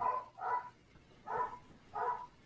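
Four short, faint animal calls in quick succession, about half a second apart.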